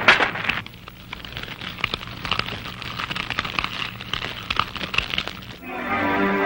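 Fire crackling with many scattered sharp pops from burning wreckage, following a loud crack right at the start. Music comes in just before the end.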